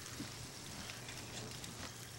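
Faint, steady sizzle and light crackle of barbecue sauce ingredients heating in a saucepan on a gas burner, over a low steady hum.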